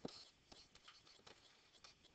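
Near silence with faint, scattered ticks and scratches of a stylus writing on a tablet screen.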